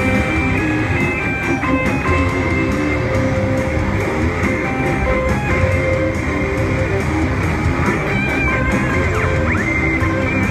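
Two electric guitars played live together through amplifiers: a rhythm part under a lead line of held notes, with a few bent notes near the end.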